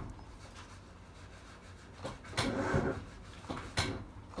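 A Datsun Go Plus that does not crank when the key is turned to start, because its battery is flat. There is no engine or starter sound, only a brief rubbing scrape about two seconds in and a sharp click near the end.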